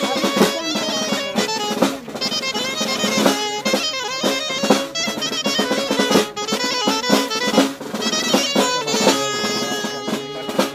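A lively Spanish folk dance tune, a fandango-style mudanza, played on a small wooden pipe with quick ornamented runs. A snare drum beaten with sticks keeps a fast rhythm with rolls underneath.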